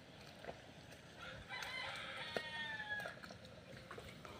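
A rooster crowing once, faintly, about a second and a half in. It is one drawn-out call that drops slightly in pitch at the end.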